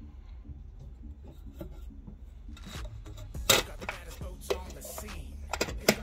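Handling noise: rubbing and a few sharp knocks and clicks in the second half, the loudest about three and a half seconds in and just before the end.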